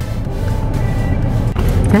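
Low rumble of a car's engine and road noise heard from inside the cabin, growing louder near the end as the car pulls away, under background music.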